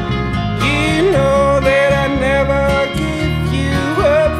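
Indie-folk band playing live: strummed acoustic guitar over bass and electric guitar, with a male vocal line held on long, slightly wavering notes entering about half a second in.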